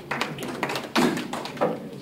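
Handling noise: a run of irregular taps and knocks, with the loudest thumps about a second in and again shortly after.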